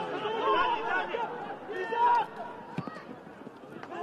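Several voices shouting and calling over one another during football play, with louder shouts about half a second and two seconds in.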